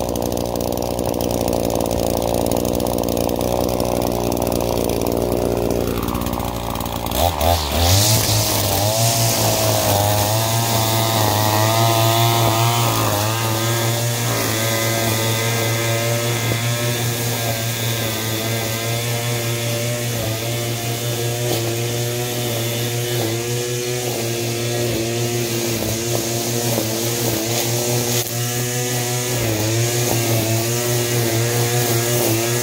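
Petrol string trimmer (whipper snipper) running at high revs and cutting grass. A different steady noise in the first few seconds drops away around seven seconds in, and the trimmer's engine note then runs on with a slight waver in pitch.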